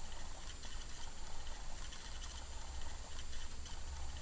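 Small high-speed DC motor driving a homemade turntable platter by friction, its bare shaft pressed against the rim of a tin lid: a faint steady hum with light irregular ticking. The unpadded shaft-on-rim drive is not yet smooth.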